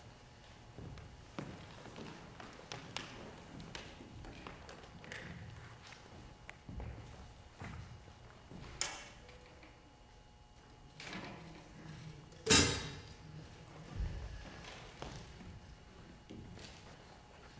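Stage gear being handled around a drum kit and amplifiers: scattered knocks and thumps, with a louder sharp clack a little past halfway and a single loudest sharp knock with a brief ring about three-quarters of the way through.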